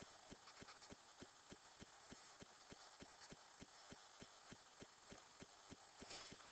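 Near silence: room tone with faint, even low ticks at about five a second.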